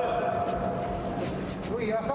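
A person's voice holding one long call, about two seconds, that ends about a second and a half in, over steady arena background noise.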